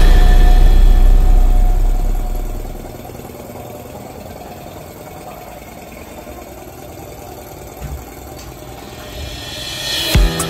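Bass-heavy background music fades out over the first few seconds, leaving a fainter, steady mechanical hum like an idling engine.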